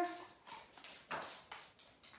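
A few soft taps of a small dog's paws and nails on the floor as it moves through the hoop, the clearest about a second in.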